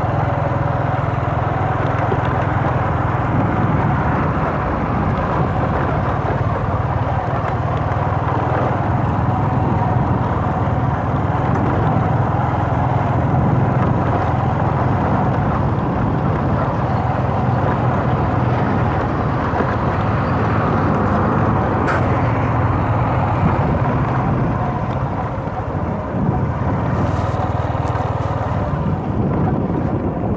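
A motor vehicle's engine running steadily while under way, mixed with wind and tyre noise on an unpaved dirt road.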